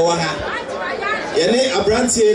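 Speech: a man talking into a microphone, with chatter from people in a large hall.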